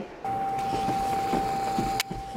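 A steady tone at one unchanging pitch sets in about a quarter second in and holds, with a few faint soft taps beneath it.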